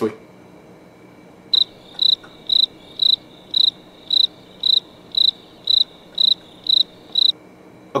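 Electronic beeper sounding a series of about a dozen short, high-pitched beeps, about two a second, starting a second and a half in and stopping shortly before the end.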